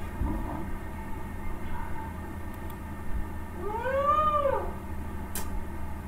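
A single drawn-out animal call, about a second long and about four seconds in, that rises then falls in pitch, over a steady low hum. A short click comes near the end.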